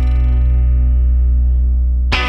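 The closing chord of a multitrack reggae recording, led by a Rickenbacker 360 electric guitar, held and ringing out steadily over a deep low note.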